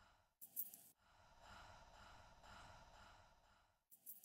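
Near silence: faint hiss, broken by a short sharp hissing burst about half a second in and another at the very end.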